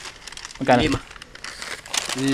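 Crinkling of packaging as an item is handled, with a brief vocal sound just under a second in.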